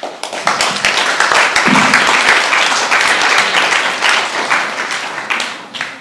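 Audience applauding. The clapping starts suddenly, stays full and steady for several seconds, then thins out and fades near the end.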